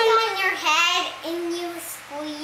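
A young girl's voice drawing out her words in a sing-song, sliding down in pitch and then holding a steadier, lower note in the second half.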